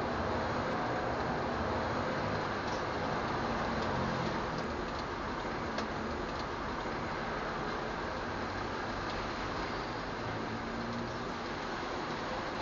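Steady rain: an even hiss with a few sharp drip ticks now and then.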